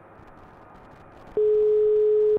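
Telephone ringback tone: one steady beep about a second long, starting well over a second in, as an outgoing call rings on the line, heard over the studio speakers.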